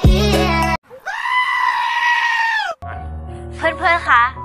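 A beat-driven dance track cuts off abruptly, then a single drawn-out goat bleat, nearly two seconds long, plays as an inserted sound effect. Music returns near the end, with a voice entering over it.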